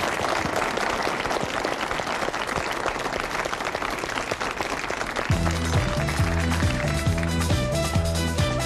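Studio audience applauding. About five seconds in, a pop song's instrumental intro comes in over the applause, with a pulsing bass line and a steady beat.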